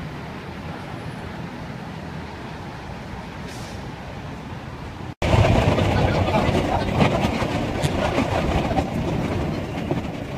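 Steady city traffic noise for about five seconds, then a sudden cut to a train crossing a bridge: loud rumbling and rattling, wheels clicking over the rails.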